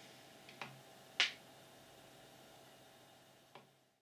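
A few small clicks of buttons being pressed on the GigaPan EPIC 100's front panel: a pair just after half a second, a sharper one about a second in, and a faint one near the end.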